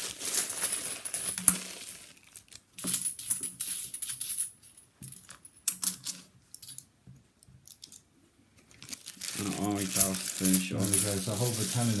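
A plastic coin bag crinkling as it is opened and £2 coins tipped out onto a terry towel, followed by scattered soft clicks of the coins being slid apart and spread by hand. A man's voice speaks over the last few seconds.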